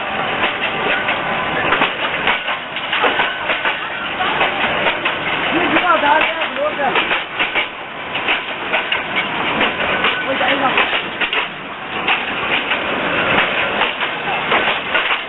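Passenger train moving alongside a platform, its wheels clacking on the rails, with people's voices mixed in.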